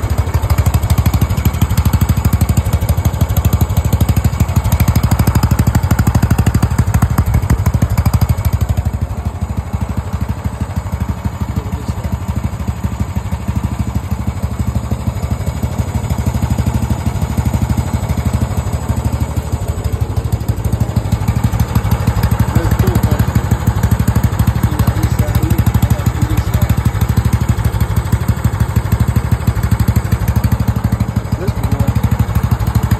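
Riding lawn mower's 14.5 hp engine running steadily, a little quieter for a stretch in the middle.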